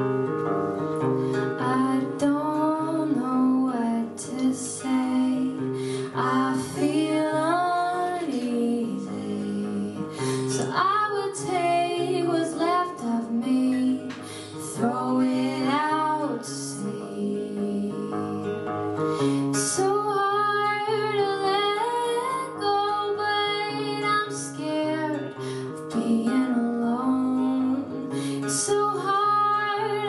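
A woman singing while strumming an acoustic guitar, a live solo song with her voice carrying the melody over steady chords.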